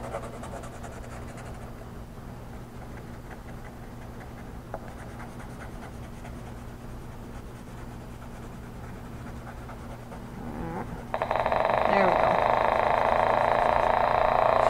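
Graphite-pencil sound drawing: a simple oscillator circuit whose connection is completed by a drawn graphite line between two copper strips. Faint scratching of pencil on paper first, then a few wavering, sliding tones as the line starts to conduct, and about 11 seconds in a loud, steady buzzing tone of several pitches switches on suddenly.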